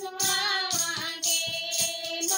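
Several women singing a Haryanvi devotional bhajan together, accompanied by a hand-struck drum keeping a steady beat of about four strokes a second and bright jingling hand percussion.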